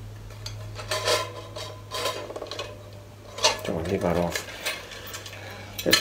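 Large Victorian pottery meat plate being handled: a series of short clinks and scrapes of the ceramic over a low steady hum.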